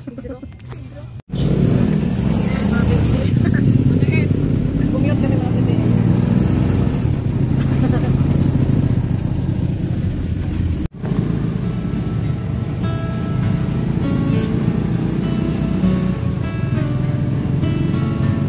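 Engine and road noise heard from inside a small open-sided passenger vehicle on the move, starting suddenly about a second in. A melody plays over it in the second half.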